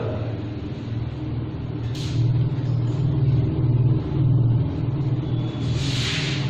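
A low engine-like rumble that swells louder about two seconds in and eases off after about four and a half seconds, with a short hiss about two seconds in.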